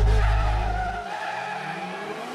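Drift cars' engines and tyre squeal. A deep low rumble underneath cuts off about a second in, leaving the fainter engine and tyre noise.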